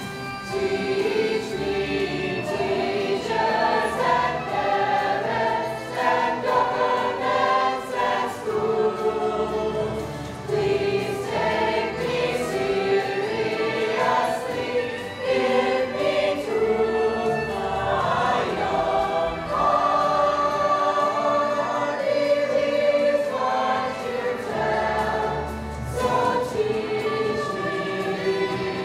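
Mixed youth choir of teenage singers singing a song together, in held notes that move from pitch to pitch.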